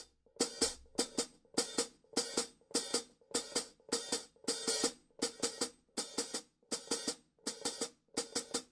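Zildjian hi-hat cymbals closed by the foot pedal alone, giving a steady rhythm of short crisp chicks, about three to four a second and often in close pairs. Each chick comes from lifting the leg and letting it drop onto the pedal.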